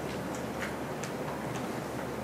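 A few faint, irregular light ticks of a pen writing on paper, picked up by close desk microphones over a steady background hiss.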